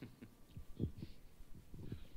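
A handheld microphone being handled and passed back, giving a few soft, dull thumps over quiet room tone.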